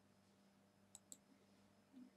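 Two faint computer mouse-button clicks in quick succession about a second in, against near silence with a low steady electrical hum.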